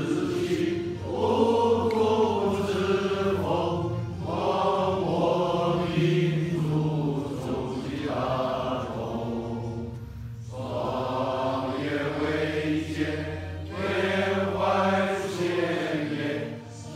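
A large group of men singing a song together in unison, with a brief pause between phrases about ten seconds in.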